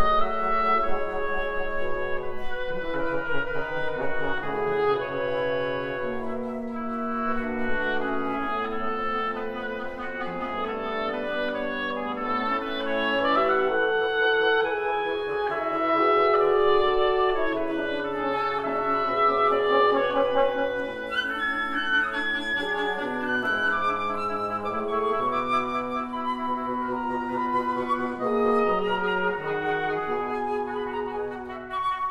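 A wind quintet of flute, oboe, clarinet, French horn and bassoon playing a classical chamber piece. Several parts sound at once, moving through frequently changing notes.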